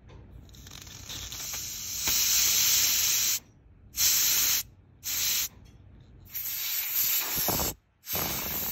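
Butane gas hissing out of a torch's small brass refill valve as a refill canister's nozzle is pushed onto it and the valve opens. First comes one long spray that builds over about two seconds, then three shorter bursts, each stopping sharply when the push is released.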